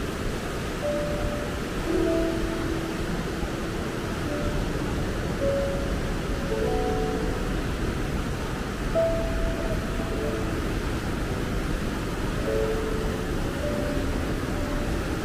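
Slow, relaxing piano music of scattered single held notes, over a steady rush of water pouring through a river weir.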